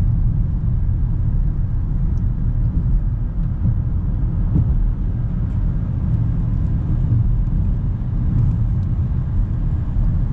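Inside the cabin of a 1997 Toyota Mark II Grande 2.5 (JZX100), its 2.5-litre inline-six and tyres making a steady low rumble while cruising; the car is very quiet and smooth.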